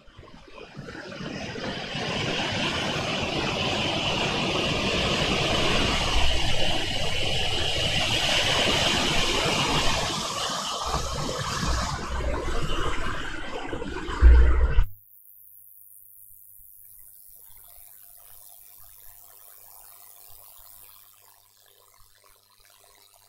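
A loud, steady rushing noise with a few low thumps, cutting off abruptly about fifteen seconds in. After that only a faint low hum and hiss remain.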